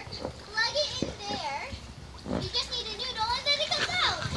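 Young children's voices at play: high-pitched, wavering cries and calls without clear words.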